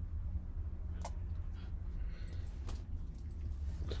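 A few faint light clicks and taps of sewing needles being put away by hand, over a steady low hum.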